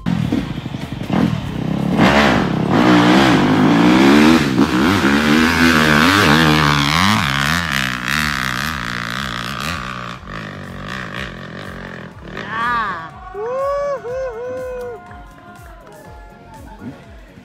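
Dirt bike engine revving hard on a hill climb, its pitch rising and falling with the throttle. It is loudest in the first half and fades away after about ten seconds.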